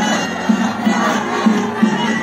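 A large group of women singing together in chorus, many voices at once, loud and continuous.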